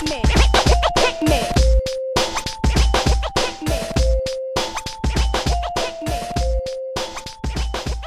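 Instrumental hip hop beat with DJ turntable scratching over a short melodic loop and heavy bass hits that repeat about every two and a half seconds. It gets gradually quieter toward the end.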